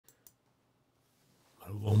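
Two faint, brief clicks in quick succession at the start, then near silence before a man's voice begins near the end.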